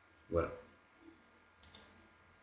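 Two quick computer mouse button clicks in close succession near the end.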